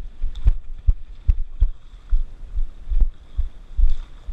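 Irregular low thumps and knocks, a few a second, from a head-mounted GoPro camera jolting in its housing as its wearer moves through shallow water.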